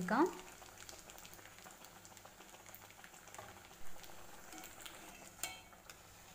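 A faint, steady sizzle of a round dough disc deep-frying in oil in a cast-iron kadai, with two short knocks in the second half.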